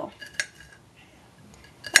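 Kitchen knife knocking against a ceramic plate while mincing garlic: a sharp click less than half a second in and a louder one near the end, about a second and a half apart.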